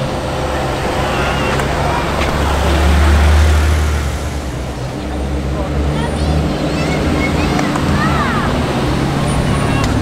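A deep car-engine rumble swells to its loudest about three seconds in. It then gives way to the steady low running of the Mercedes-AMG GT Black Series' twin-turbo V8 crawling past at walking pace, with crowd chatter over it.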